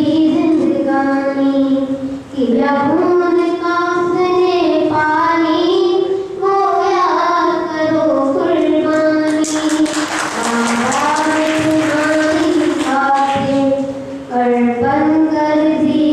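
A boy singing a Hindi song into a handheld microphone, holding long notes that slide between pitches. From about ten seconds in, a hissing noise lies over the voice for a few seconds.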